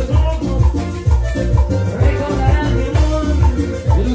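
Live Latin dance music played loud through loudspeakers: a heavy bass beat about twice a second under melody and hand percussion.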